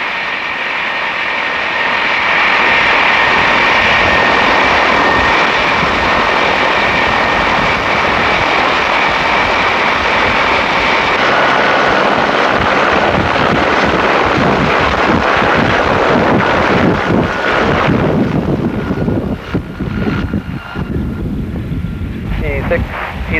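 Helicopter running close by, a steady engine whine over heavy rotor noise. The whine shifts pitch about halfway through. In the last few seconds it grows quieter and breaks into a pulsing rotor beat as the helicopter moves away.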